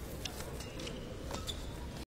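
Faint background of an indoor badminton hall, with a few brief high squeaks.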